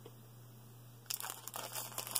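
Clear plastic packaging sleeve crinkling as it is handled, in short scattered rustles that start about a second in.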